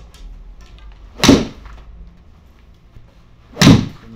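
Two sharp, loud golf shots: an iron striking the ball into a simulator hitting screen, about a second in and again near the end, each with a short ringing tail.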